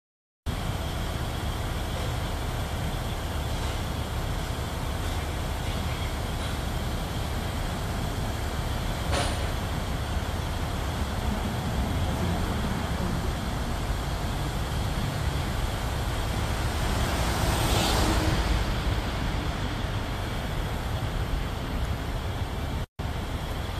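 Steady low rumble of construction machinery and road traffic, with one sharp click about nine seconds in and a swell that grows louder a few seconds before the end, like a vehicle passing.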